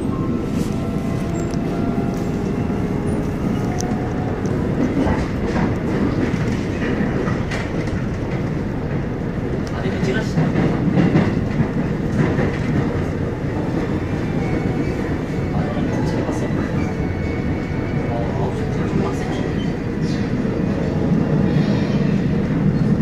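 Line 1 electric commuter train running along the track, heard from inside the car: a steady rumble of wheels on rail with scattered clicks over the rail joints.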